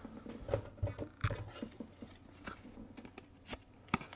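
Faint rustling and small clicks from a trading card being handled, with a sharper click near the end.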